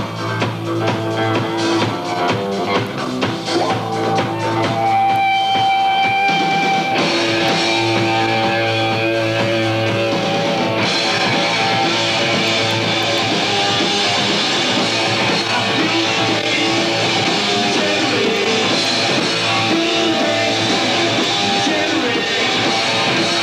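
Post-hardcore band playing live: electric guitar, bass and drum kit, captured on an audience video recording. The playing starts sparser and builds, the full band thickening and getting louder about seven seconds in and again about eleven seconds in.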